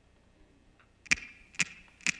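Drummer's count-in, drumsticks clicked together: two sharp clicks about half a second apart in the second half, after a quiet first second.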